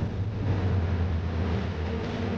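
Steady low rumble of a boat under way at sea, with a hiss of wind and water over it.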